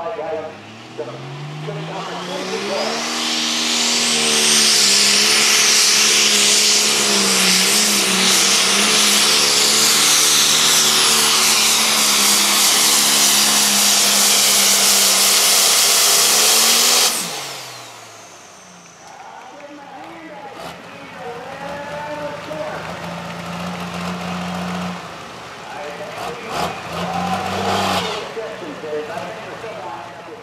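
John Deere super stock pulling tractor's turbocharged diesel engine revving up over a couple of seconds, then held at full throttle under load for about thirteen seconds with a high turbo whine. About seventeen seconds in it cuts off suddenly and winds down.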